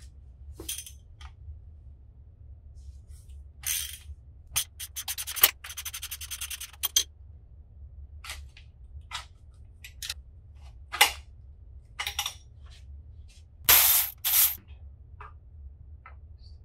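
Hand tools and parts being worked on a Kawasaki KX85 dirt bike frame during disassembly: scattered metal clicks and clinks, a ratchet wrench clicking rapidly for about a second and a half around five to seven seconds in, and two louder scraping rustles near the end, over a low steady hum.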